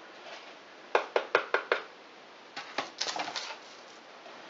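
A cinnamon-sugar-coated cookie tapped against the rim of a bowl to knock off loose sugar. There is a run of about five quick light taps about a second in, then a second, looser cluster of taps about two and a half seconds in.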